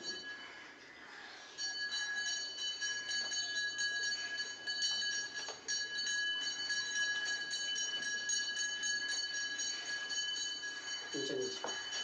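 A steady, high-pitched ringing alarm tone that starts about a second and a half in, breaks off briefly about halfway, and stops just before the end.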